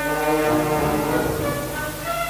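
Symphony orchestra playing a held brass chord, with a low rumble swelling in the bass through the middle of the passage.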